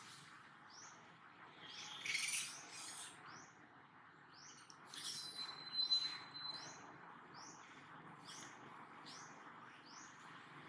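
Birds calling outdoors: a short rising chirp repeated about once or twice a second, with louder calls around two seconds in and again between five and seven seconds in, one holding a steady whistle-like note, over a faint steady background hiss.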